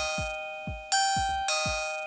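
Electronic chime of a Doorbell M10 video doorbell playing its ding-dong melody after its call button is pressed. Ringing notes sound about a second in and again half a second later, each fading away.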